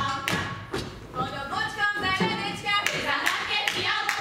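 Women's voices singing a Slovak folk song together, unaccompanied, while dancing, cut through by sharp stamps and taps of the dancers' boots on the stage floor.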